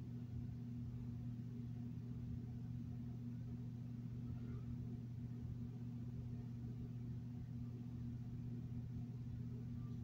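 A steady low hum over faint room noise, unchanging throughout.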